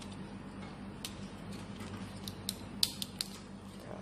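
Small sharp clicks and scrapes of telephone cable wires being hooked and pressed into a plastic terminal block, about half a dozen clicks, the loudest near the end, over a low steady hum.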